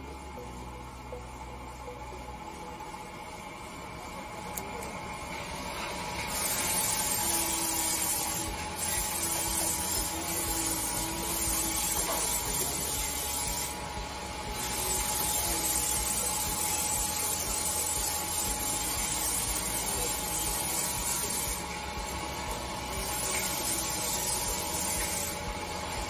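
Electroweld 15 kVA handheld resistance welder in seam welding mode, its copper electrode working a thin steel strip. A steady hiss sets in about six seconds in and runs on, dropping off briefly a few times, over a low hum.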